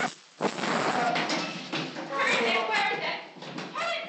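Confused, raised voices and commotion during a violent struggle in a small room, heard through a thin, low-quality recording.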